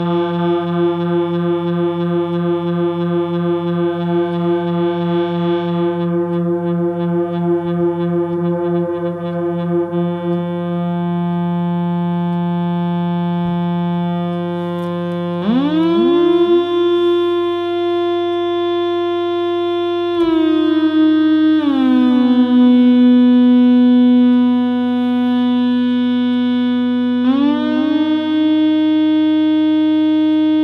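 Waldorf Rocket synthesizer holding one buzzy note that pulses rapidly for about the first ten seconds. About halfway through the pitch glides up, with repeats of the glide from a digital delay. It later slides down and then back up again.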